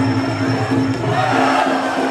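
Traditional Muay Thai fight music (sarama) playing live: a held, pitched melody over drums. A crowd cheer swells up about a second in.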